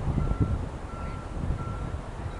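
Wind buffeting the microphone with a low, gusty rumble, and behind it a faint high beep repeating evenly about one and a half times a second.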